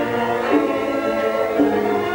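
A children's choir singing held notes, accompanied by violins.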